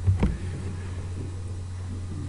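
A pause in a lecture: a steady low hum in the hall's recording, with one short breath-like sound about a quarter second in.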